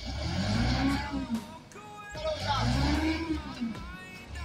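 A truck's diesel engine revving hard twice, each rev rising and falling in pitch, as the truck tries to drive out of deep mud where it is stuck.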